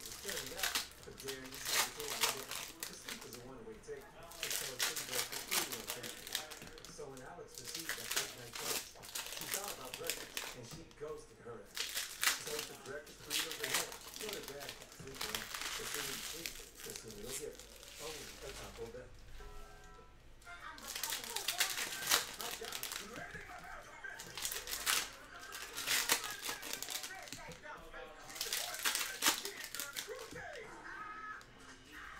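Foil trading-card pack wrappers being torn open and crinkled by hand, one pack after another, with short pauses in between.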